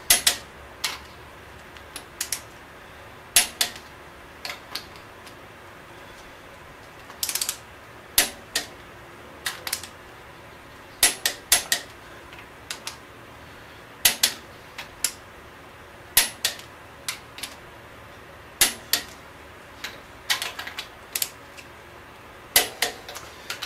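Ratcheting torque wrench on the cylinder head bolts of a big-block Chevy 454: scattered sharp clicks, single and in short runs, every second or so, as the bolts are brought to 60 lb-ft.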